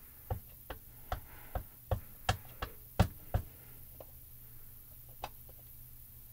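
A clear acrylic stamp block tapped repeatedly onto a foam ink pad in its plastic case, inking the stamp: about nine sharp taps at roughly three a second, then one more a couple of seconds later.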